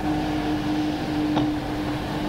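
Steady hum with a low rumble underneath: the background noise of an old lecture recording, with one faint click partway through.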